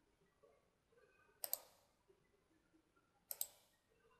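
Computer mouse buttons clicking: two quick pairs of clicks, about a second and a half in and again near the end, with near silence between.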